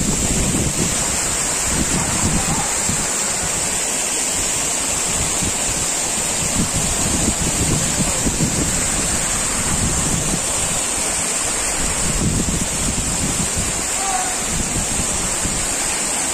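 Steady rush of water from a waterfall and small cascades spilling over rocks, with gusts of wind rumbling on the microphone.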